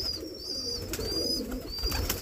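Domestic pigeons cooing, with short, high, thin chirps repeating about every half second.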